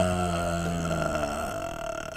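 A man's voice holding one long, low vowel-like sound for about two and a half seconds, steady in pitch and slowly fading.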